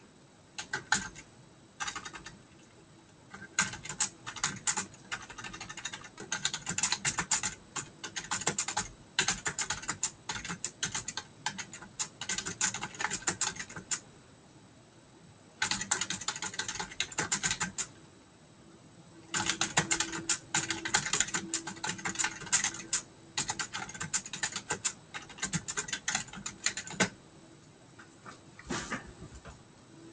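Typing on a computer keyboard: fast runs of key clicks, broken by a few short pauses.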